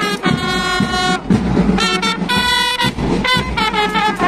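Marching brass band playing: trumpets sound a run of held notes, each lasting about half a second to a second, over steady bass drum beats.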